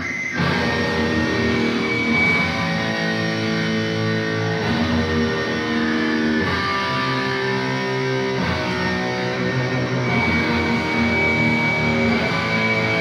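Heavy metal band playing live. Distorted electric guitars come in suddenly with held chords that change about every two seconds, over drums.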